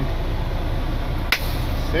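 Western Star 4900SB heavy wrecker's diesel engine running at low speed, heard from inside the cab as a steady low rumble, with a single sharp click just over a second in.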